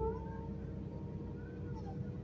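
Inside a moving city bus: a steady low rumble from the bus with a whining tone over it that glides upward just after the start and bends up and back down again near the end.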